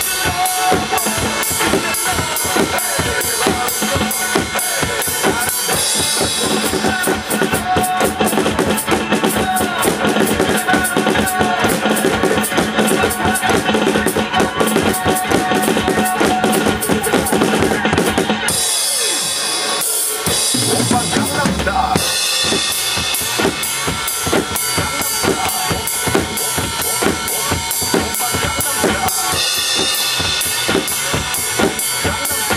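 Acoustic drum kit played in a fast, steady dance beat with bass drum, snare and cymbals, over a recorded pop backing track. About 18 seconds in, the low bass drum drops out for a few seconds, then the full beat returns.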